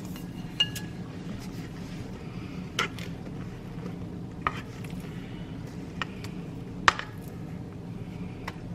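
Spatula scraping and clinking against a metal mixing bowl as a wet bread batter is poured into a metal loaf pan: about five sharp clinks a second or two apart, the loudest near the end, over a steady low hum.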